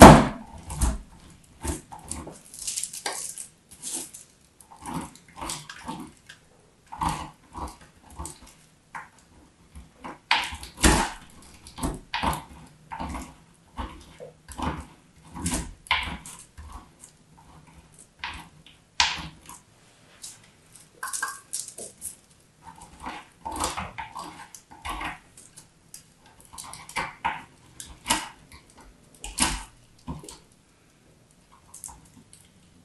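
Dry bar soap being cut and cracked into flakes with a small metal tool: irregular crisp crunches and crackles, a few a second, with louder cracks now and then.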